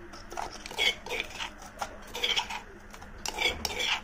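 Steel spoon scraping and stirring through wet, gritty slate-pencil paste in a stone mortar, a series of short scrapes and clinks of metal on stone.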